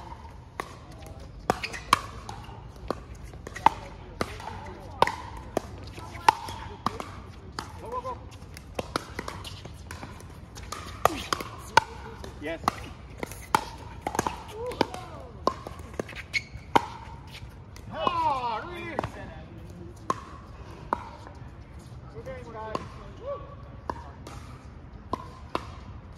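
Pickleball paddles popping against the plastic ball in a rally: sharp, hollow hits about a second apart, with fainter pops from other games mixed in. Someone gives a short cheer of "woo" near the end.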